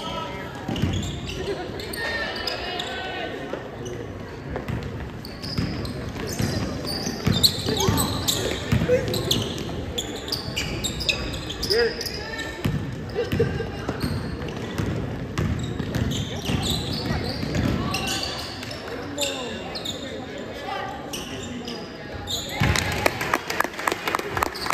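Basketball bouncing on a hardwood gym floor during a game, with scattered voices of players and onlookers echoing in the gym.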